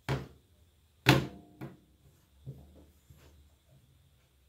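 Knocks and taps of a smartphone being handled and set down on a hard desk: a sharp knock at the start, a louder one about a second in, then a few lighter taps.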